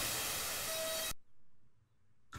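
White noise from a Eurorack modular synthesizer's noise source, processed through a Tiptop Audio Z-DSP bit-crushing effect, sounding steadily with a faint thin tone near its end, then cutting off suddenly about a second in.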